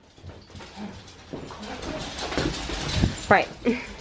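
Excited Maltese dogs whining over a steady rustle of handling noise.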